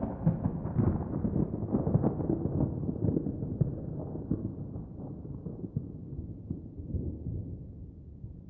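A deep, thunder-like rumble slowly fading away, with a quick irregular run of typewriter-style key clicks over it, a few per second, thinning out toward the end.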